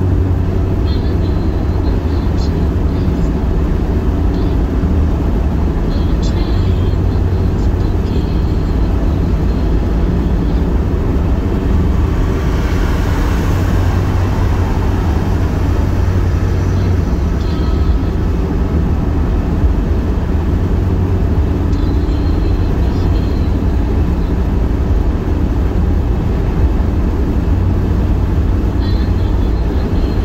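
Car cabin road noise at highway speed: a steady low rumble of engine and tyres, with a brief swell of noise about halfway through.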